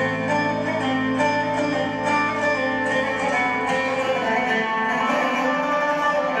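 Recorded Arabic-style belly dance music playing steadily, a plucked string instrument carrying the melody over a held low note.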